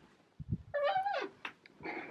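Bedroom door pushed open on a squeaky hinge: a couple of soft thumps, then a drawn-out creak that wavers and drops in pitch. The whole house is very squeaky.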